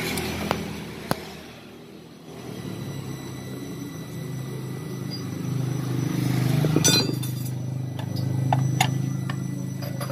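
Metal clinks and taps of a hand tool working a bolt on the scooter's cover, with a quick cluster of clinks about seven seconds in and a few more after, over a steady low hum.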